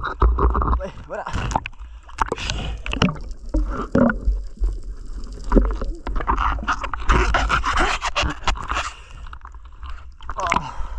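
Underwater noise on a diver's camera: a steady low rumble of water moving against the housing, with many sharp knocks and scrapes as a mud crab is handled close to the lens.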